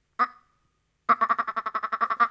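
A man's voice imitating a tokay gecko: one short click, then a fast, even rattle of about a dozen pulses a second, like the chuckling build-up before a gecko's 'tokay' calls.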